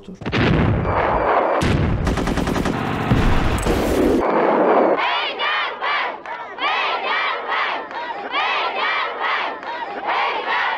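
Rapid automatic gunfire for about the first four seconds, then a large crowd shouting and cheering, many voices calling out over one another.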